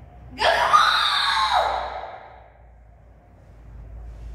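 A young karateka's kiai: one loud shout starting about half a second in and lasting about a second and a half, marking a strike in the kata Gankaku.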